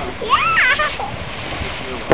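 Geyser erupting: a steady rush of splashing water and steam. A short high-pitched voice cuts in about half a second in.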